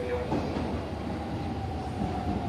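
JR 313-series electric multiple unit running into the station platform, a steady low rumble from its wheels on the track.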